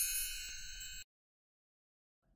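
The ringing tail of a channel-logo jingle: a high, bell-like chime fading, then cutting off suddenly about a second in.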